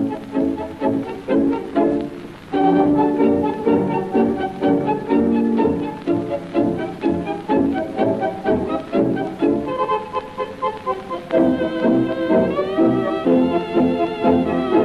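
Tango orchestra with violins playing the instrumental introduction in short, accented chords, with a rising slide in pitch near the end.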